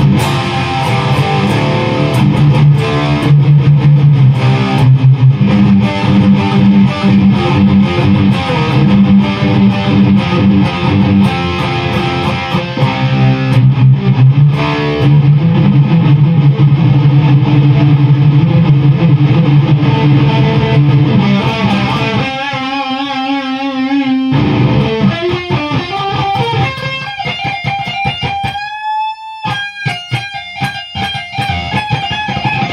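Distorted electric guitar played through a Behringer TO800 Vintage Tube Overdrive pedal into a Peavey 6505 amp. It plays dense low-string riffing, then a held note with wide vibrato about two-thirds of the way through, and a note bent upward near the end.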